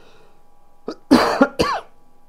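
A man coughing: two short coughs in quick succession about a second in.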